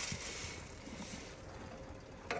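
Horse feed poured from a scoop into a bucket: a steady rustling hiss that fades about a second and a half in.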